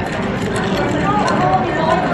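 Indistinct background chatter of people talking, over a low steady rumble.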